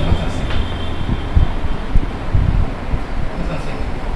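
Chalk knocking and scraping on a blackboard as a line of figures is written, with a few dull knocks over a steady low rumble.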